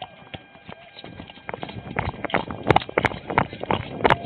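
Running footsteps of police officers on pavement, heard through a jostling body-worn camera. A quick, irregular patter of thuds starts about a second in and grows louder.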